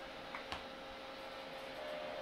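Faint steady hum with a light hiss from running bench electronics, and two small clicks about half a second in.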